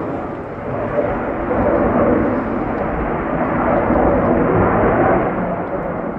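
An airplane flying past: steady engine noise, a little louder through the middle.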